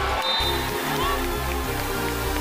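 Loud music with a deep bass line that changes notes every fraction of a second.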